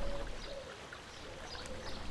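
Water lapping and trickling, faint, with a few faint short high chirps over it.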